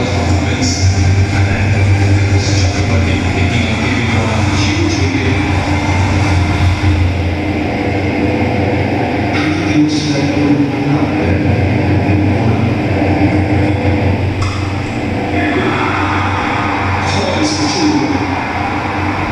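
Cricket match broadcast audio played loudly through a room's surround-sound speakers: a steady, rumbling wash of background sound with a constant low hum and faint commentary.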